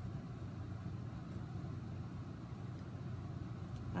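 Steady low background hum, even throughout, with no distinct events.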